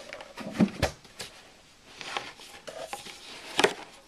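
A few light plastic clicks and knocks as a 12-volt power plug is handled against a thermoelectric cooler's plastic case, the sharpest about half a second in and again near the end.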